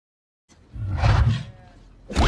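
A loud, rough roar-like cry from a film soundtrack with animated animal characters, starting after about half a second of silence, swelling around one second in and then fading.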